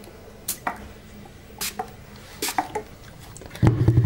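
Hand trigger spray bottle misting a doll's hair: three short spritzes about a second apart. Near the end comes a loud low bump from handling.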